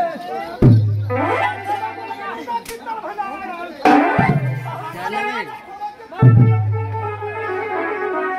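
Raut Nacha folk band playing in a procession: three heavy drum strokes, each with a long low ring, under a steady, nasal wind-instrument melody, with the crowd's voices and shouts mixed in.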